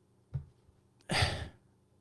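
A man gives a short breathy sigh into a close microphone about a second in, after a faint click just before it.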